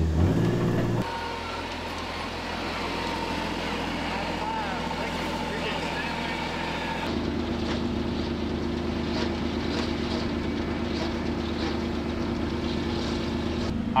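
Side-by-side utility vehicle engine running as it drives off, quieter after the first second. About seven seconds in, after a cut, a compact tractor's engine runs at a steady drone as it pulls a rear-mounted rotary mower across a field.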